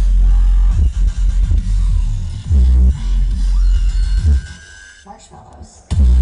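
Dubstep played loud over an outdoor festival sound system, with heavy pulsing bass. About four and a half seconds in, the music drops almost out for a second and a half, then the bass comes slamming back in at the end.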